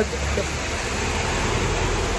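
Heavy rain pouring down onto a street, a steady hiss of falling water with a low rumble beneath it.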